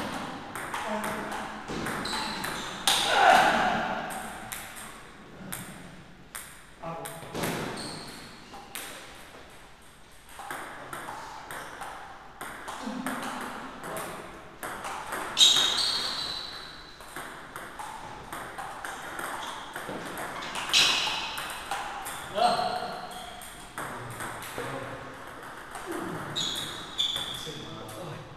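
Table tennis rally: the ball clicking off the paddles and the table in quick, sharp knocks that come again and again, with voices at times.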